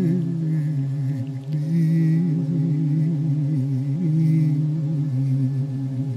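Background music of men's voices singing in several parts, in the manner of Georgian polyphonic song: a low drone is held under a wavering upper melody.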